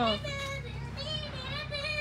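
Speech only: a child's high voice talking briefly, over a steady low background hum.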